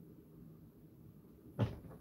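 Quiet room tone broken by a single short, dull knock about a second and a half in, like a cupboard door, drawer or object bumping shut.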